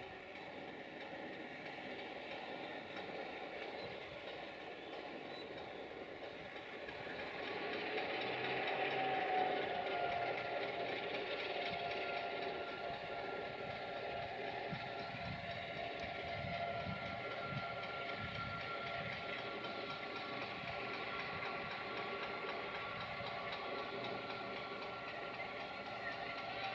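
Diesel-hydraulic locomotive (CFR class LDH1250) hauling Talent DMU cars through the station at low speed, its engine running steadily. The sound swells about eight to ten seconds in, and wheels knock over rail joints later on. A second diesel-hauled passenger train pulls away on the next track at the same time.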